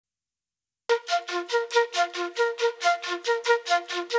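Instrumental background music that starts about a second in after silence: a fast, even run of repeated high notes, about five a second.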